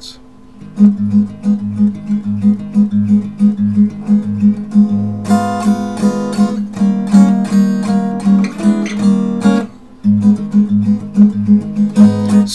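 Acoustic guitar strummed in a steady rhythm, low bass notes alternating with chord strums. It starts after a short pause, grows fuller and brighter for a few seconds midway, and breaks off briefly about two seconds before the end.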